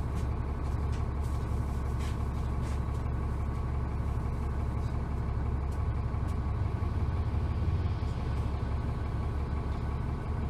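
Cummins ISC inline-six diesel of a 2001 New Flyer D30LF transit bus running, heard from inside the passenger cabin as a steady low drone with a few light rattles.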